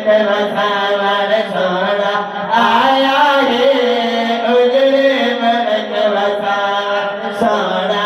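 Several men's voices chanting a devotional recitation together through microphones and a loudspeaker, in long held notes that shift slowly in pitch.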